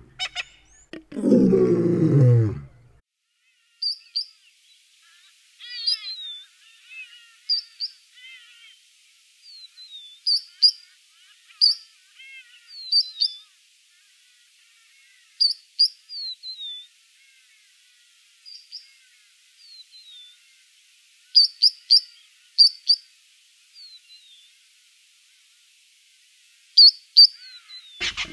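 Three-banded plover calling: short, high-pitched whistled notes, often in quick pairs or triplets, with thin downslurred whistles and a few softer twitters between them, spaced irregularly. Before the calls begin there is a loud, low, falling roar lasting about two seconds.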